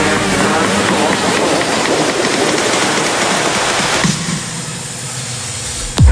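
Band sawmill cutting through a sengon log, a loud dense rasp. About four seconds in the cut ends and the saw runs on more quietly, without load.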